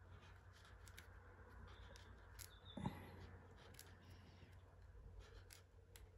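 Faint handling sounds of paracord being threaded through a bracelet weave with a metal lacing needle: light scraping and small ticks, with one soft knock about three seconds in.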